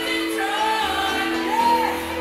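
Live soul band playing with a singing voice over held notes.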